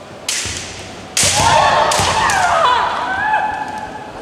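Women kendo fencers exchanging sharp bamboo shinai strikes with stamps on the wooden floor, one about a third of a second in and another about a second later, followed by long high-pitched kiai shouts whose pitch wavers for about two seconds.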